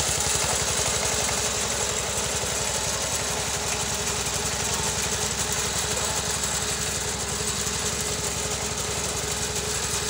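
Small engine of a motorized rice reaper-binder running steadily at an even speed.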